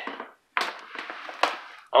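Scratching and rustling in dry wood-chip bedding as a mouse and a small cobra move over it, with a couple of sharp clicks, the first about half a second in and another near the end.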